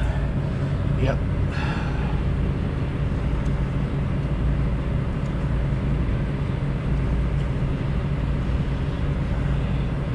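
A nearby engine idling with a steady low hum that keeps an even pitch and level throughout.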